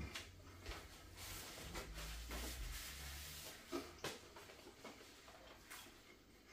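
Faint chewing of a mouthful of saucy chicken kebab on naan, with a couple of small mouth clicks about four seconds in.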